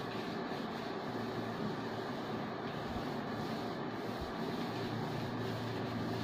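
A whiteboard eraser rubbing across the board as the writing is wiped off, over a steady background hum and hiss.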